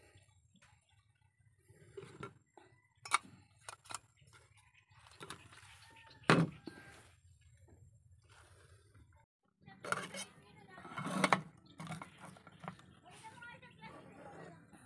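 Metal camping cookware being handled: a few sharp clinks and knocks as an aluminium pot set, pot stand and brass alcohol stove are picked up and set down, with a busier run of clatter and plastic rustling near the end.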